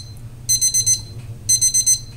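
Electronic oven timer beeping: high-pitched bursts of rapid beeps, about one burst a second, signalling that the set cooking time is up.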